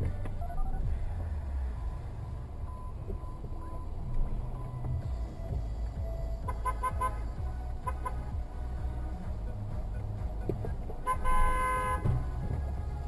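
Car horn: a few quick toots about six and a half seconds in, then a longer, louder blast near the end, over a steady low engine rumble heard from inside a car.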